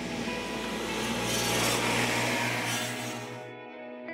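A utility vehicle driving by with a steady low engine hum and broad noise that swells to a peak about halfway and eases off, then cuts off suddenly shortly before the end, with background music underneath.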